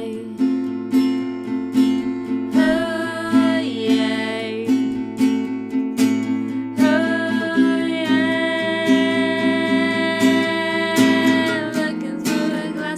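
Takamine acoustic guitar strummed in a steady rhythm, about two strums a second, with a woman singing long held notes over it, from about two and a half seconds in and again from about seven seconds in.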